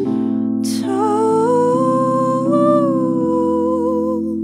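Sustained chords on a Nord Electro 5D stage keyboard under a woman's long wordless vocal note. The note comes in about a second in, just after a breath, wavers slightly, and lifts a little midway.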